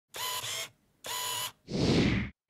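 Two camera shutter-and-winder sound effects, each about half a second long, with a short gap between them. Near the end they are followed by a swelling whoosh.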